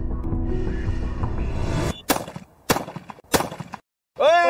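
Background music plays for about two seconds and cuts off abruptly. Then come three sharp shotgun shots at flying clay targets, about half a second apart, each with a short ringing tail.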